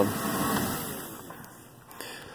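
A van's idling engine being switched off, its running fading away over about a second and a half.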